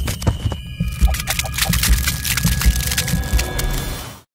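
Electronic outro sting: deep bass thumps about twice a second under rapid sharp clicks and a few held high tones.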